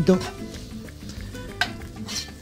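Sliced mushrooms and smoked pork sizzling in a non-stick frying pan as a spatula stirs them, with one sharp tap of the spatula against the pan about one and a half seconds in.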